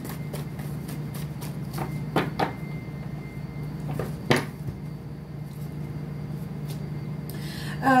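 Deck of tarot cards being shuffled and handled by hand, with a few sharp clicks about two seconds in and just after four seconds, and a brief rustle near the end, over a steady low hum.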